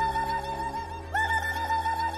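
A high, rapidly warbling whoop, a movie-style 'Indian call' sound effect. It is one pitched note pulsed on and off several times a second, and a new phrase begins with a quick upward slide about a second in. It plays over sustained background music, with a low drone entering partway through.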